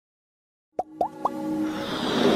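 Electronic intro sting: silence, then three quick rising plops about a quarter second apart, followed by a synth build that swells steadily in loudness.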